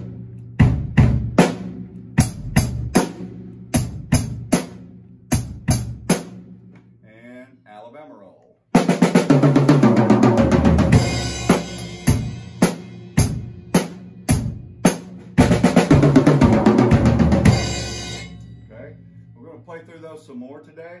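Drum kit played in a simple 'boom-chick' beat of bass drum and snare, single separate strokes for about six seconds. After a short pause, a busier beat is played for about nine seconds, with cymbals ringing continuously over the drums before it dies away.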